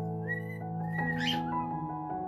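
A cockatiel whistling over background music with sustained chords: two short whistled notes in the first second, then a sharper rising call shortly after.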